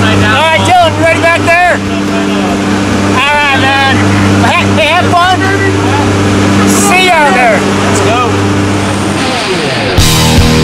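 Steady drone of a skydiving jump plane's engines inside the cabin, with people shouting over it. Near the end the drone's pitch falls briefly.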